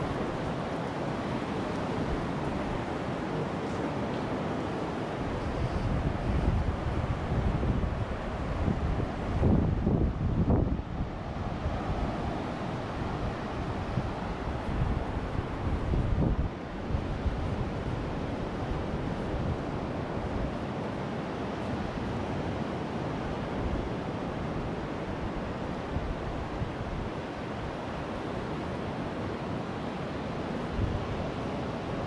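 Ocean surf washing onto a sand beach, with wind buffeting the microphone; the wind gusts hardest about a third of the way in.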